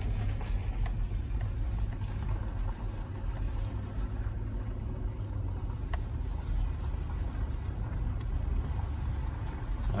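Steady low rumble of a vehicle being driven on a gravel road, heard from inside the cabin: engine and tyre noise.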